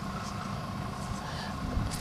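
Steady low outdoor background rumble with no distinct event in it.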